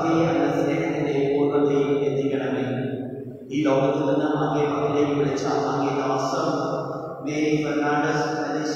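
A man's voice chanting a liturgical prayer in long, sustained sung phrases, with short breaths about three and a half seconds in and again near the end.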